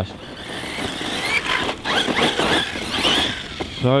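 Brushless electric motor and drivetrain of a Team Magic desert buggy RC car on a 6S battery, a high whine rising and falling in pitch several times as the throttle is worked at high speed, over a steady hiss of tyres on grass and dirt.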